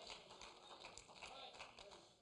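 Near silence: faint room tone with a few faint taps and a faint murmur of voices.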